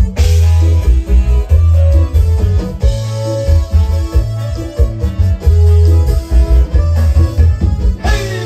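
Live band playing an instrumental Oaxacan chilena: a strong bass line under a busy plucked-string and keyboard melody.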